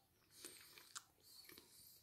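Faint scraping and clicking of a utensil stirring a homemade slime mixture in a small bowl, a few soft strokes about half a second apart.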